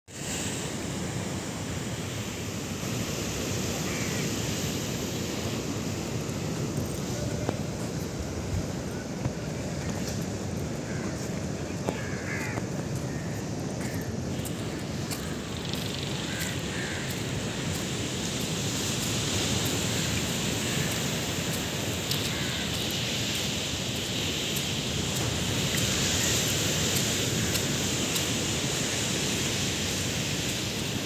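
Steady outdoor wash of sea surf and wind on the microphone, the surf growing louder and brighter about halfway through.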